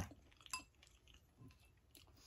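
Near silence with one light clink of a metal spoon on a dish about half a second in, leaving a brief faint ring, and a few faint small eating sounds after it.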